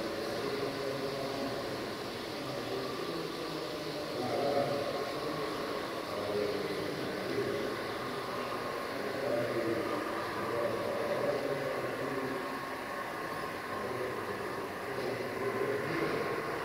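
H0-scale model electric locomotive hauling a train of container wagons over the layout track: a steady running sound without sharp clicks or impacts, blended with the noise of the surrounding room.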